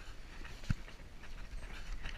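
Two Marines grappling up close: heavy breathing and strained grunting with the rustle of uniforms, and one sharp thump a third of the way through.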